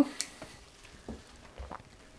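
Faint handling sounds: a few light taps and soft rustles from hands working at a large potted plant.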